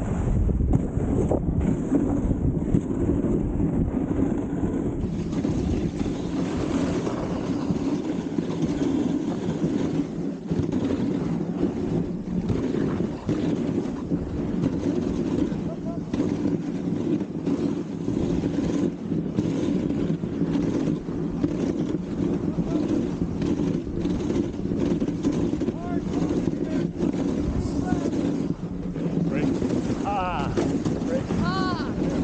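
Dog sled running over a packed snow trail: a continuous rumbling scrape from the sled runners and frame, peppered with small knocks and clicks, with wind buffeting the microphone.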